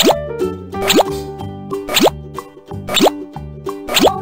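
Cartoon pop sound effects, each a quick upward-sliding bloop, coming about once a second, over children's background music with a steady bass line.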